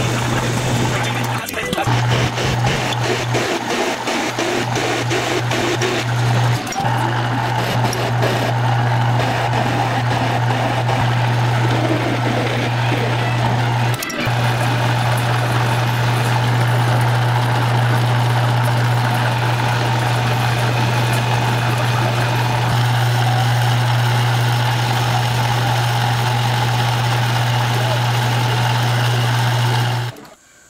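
Metal lathe running steadily with a low motor hum while it turns and bores a pilot-bearing adapter, the sound breaking briefly a few times, with music playing over it.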